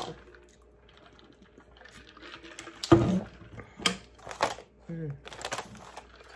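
Drinking from a straw-lid water bottle: scattered clicks and knocks of the bottle and lid, with sips and swallows. A sharp knock about three seconds in is the loudest.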